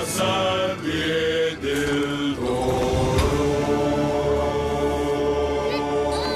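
Deep male chorus singing the closing phrase of a song, changing notes for the first couple of seconds and then holding one long chord over a low orchestral drone.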